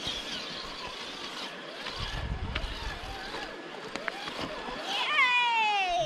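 Steady outdoor hiss with a brief low rumble of wind on the microphone about two seconds in. Near the end, a person's drawn-out exclamation glides down in pitch.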